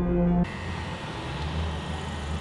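Eerie horror music cuts off abruptly about half a second in. It gives way to the steady low hum of an idling Honda car, heard from inside the cabin.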